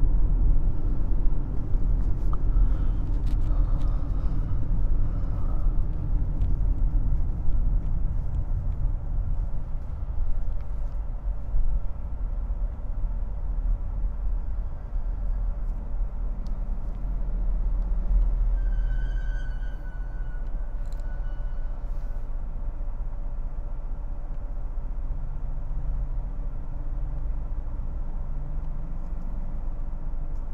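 Interior road and engine noise of a Nissan sedan being driven: a steady low rumble that eases a little about two-thirds of the way through, with a faint rising note near the end.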